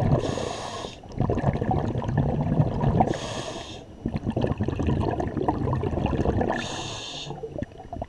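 Scuba regulator breathing heard underwater in a steady cycle: a short hiss of inhaled air through the second stage comes three times, about three seconds apart. Each hiss is followed by a longer burst of exhaled bubbles gurgling and crackling.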